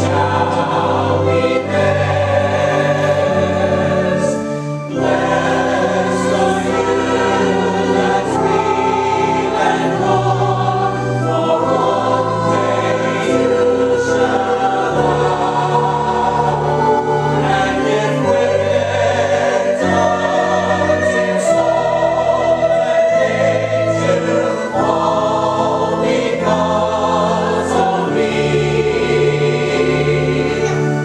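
Church choir singing, the chords held and changing every second or two.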